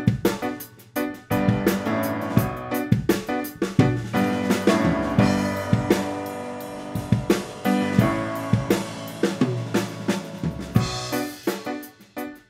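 Upright piano and a drum kit playing together in one room, recorded through a Rode NT2000 large-diaphragm condenser microphone on the piano: the drums bleed in loudly, their hits cutting through the piano throughout.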